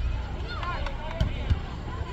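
Indistinct calls and shouts from football players and onlookers over a low outdoor rumble, with two sharp thumps about a second and a half in.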